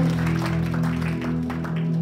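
Live worship band music: a held keyboard chord with a steady beat of light percussion over it.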